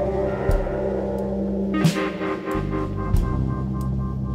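Instrumental band jam, improvised live: drum kit, electric guitar, bass and synth holding sustained tones, with sparse drum hits, the loudest about two seconds in. The bass drops out for about half a second just after that hit, then comes back.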